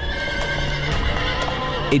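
A horse neighing, with hoofbeats, over sustained background music.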